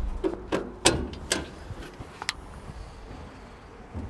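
A handful of sharp knocks and clicks over the first two and a half seconds, the loudest about a second in, over a low rumble at the start.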